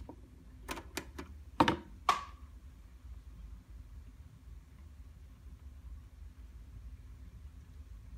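A quick run of mechanical clicks and clunks from a Fisher Studio-Standard cassette deck as the cassette is seated and the piano-key transport buttons are pressed to start playback of a cassette with a freshly replaced pressure pad; the last clunk rings briefly. After that only a faint steady low hum.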